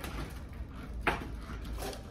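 Vertical window blinds being closed: a quiet rattle of the slats with a sharper click about a second in and a fainter one near the end.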